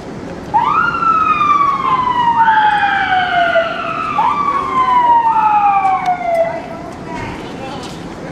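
Police armoured vehicle siren sounding, each sweep rising quickly and then falling slowly over about three seconds, with a second siren tone overlapping it. It starts about half a second in and stops near the end.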